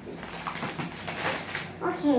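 Paper and gift wrapping rustling and crinkling in a series of short scrapes as it is handled. A short high-pitched vocal sound begins near the end.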